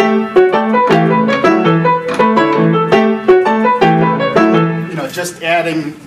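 Solo piano playing a repeating rhythmic pattern in several layered, interlocking voices, stopping about five seconds in.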